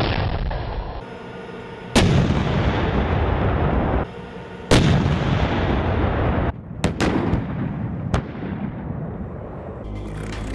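M1A2 Abrams tank's 120 mm main gun firing on the move. Two loud shots come about 2.7 s apart, each followed by a long rumbling echo. Later three shorter, sharper cracks follow close together, all over the steady noise of the moving tank.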